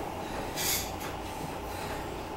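Elliptical trainer running as it is pedalled: a steady low mechanical rumble, with a short hiss about half a second in.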